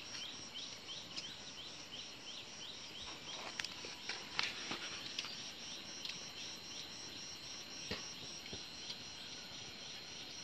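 Insects calling in the open: a steady high pulsing trill throughout, with a short rising chirp repeated about three times a second that fades out after a few seconds. A few faint clicks are scattered through the sound.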